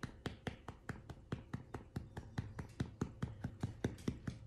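A hand patting a miniature dachshund's back through a fleece blanket in quick, even pats, about five a second, to burp her after a meal.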